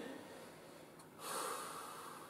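A man's single audible breath out, partly through the nose, about a second in, fading away over most of a second.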